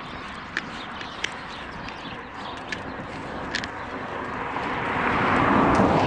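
A motor vehicle going by on the road: its engine and tyre noise swell up over the second half and are loudest near the end. A few faint clicks come earlier.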